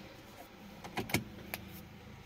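A few sharp clicks as the car key is turned in the ignition switch: a quick cluster a little past halfway, then one more click about half a second later.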